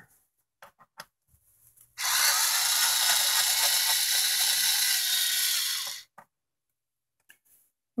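Cordless electric screwdriver running for about four seconds as it backs out the TV stand's mounting screws. A few light clicks come before and after it.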